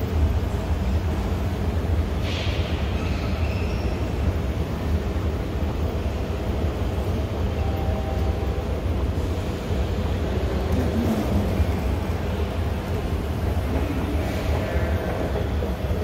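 Steady low mechanical rumble under the hiss of a large, echoing concourse hall.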